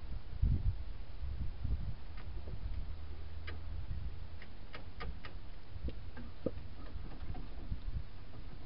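Rear axle hub and shaft of a DJ-5 Jeep being worked by hand, giving scattered light metallic clicks, several close together around the middle, over a low rumble. The clicks come from play at the axle's wheel bearing, which the owner is pretty sure has gone out.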